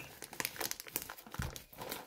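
Irregular crinkling of plastic packaging being handled close to the microphone, with a soft knock about one and a half seconds in.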